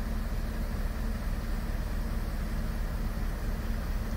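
Mobile crane's engine running steadily with a low, even drone.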